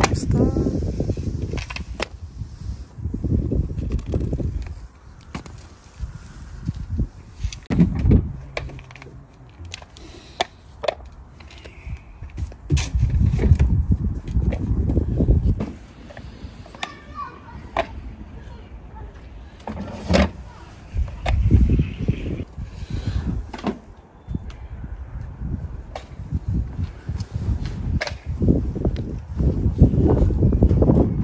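Wind buffeting the microphone in irregular low gusts, with scattered sharp clicks and knocks of plastic deck pedestals being handled and set down on stone paving.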